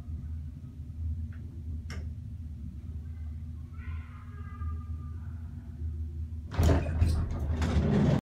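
Old single-speed traction elevator: a steady low hum with a single click about two seconds in. About six and a half seconds in, the elevator door slides open with a loud rattle.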